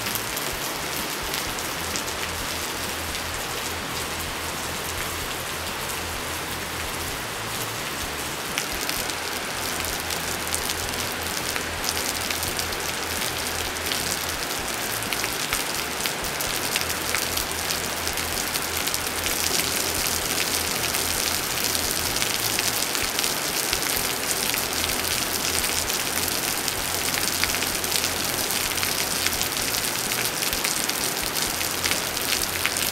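Steady rain falling, a dense patter of drops, growing a little louder in the second half.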